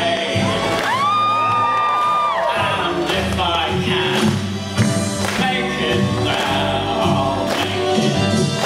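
A woman singing into a microphone over a recorded backing track, played through stage speakers. About a second in she holds one long high note for over a second.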